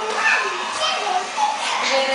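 A child's voice calling out and vocalizing in play, in short bursts without clear words.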